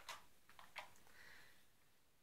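Near silence with a few faint clicks of plastic Nerf blaster parts being handled and picked up.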